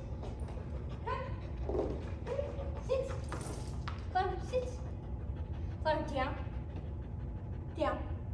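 A goldendoodle panting, between a few short spoken words, over a steady low room hum.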